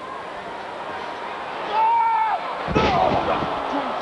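A wrestler's body slammed onto the ring in a two-handed chokeslam: one loud impact nearly three seconds in. A long drawn-out shout comes just before it, and arena crowd noise runs underneath.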